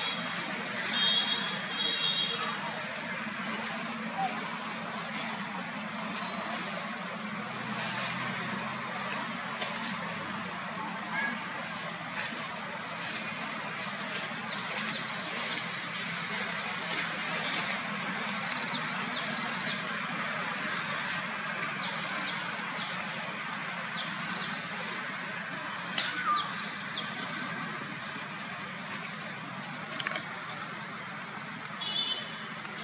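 Steady outdoor background noise with short, high chirps scattered through it, including a quick cluster of beeps about a second in and a sharp click near the end.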